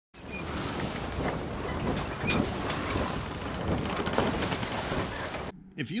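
Steady wind noise buffeting the microphone over rushing water, cutting off abruptly about five and a half seconds in.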